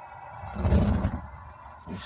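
Gas fireplace main burner lighting off the pilot: a low whoosh of ignition about half a second in, lasting under a second, over a steady hiss of gas.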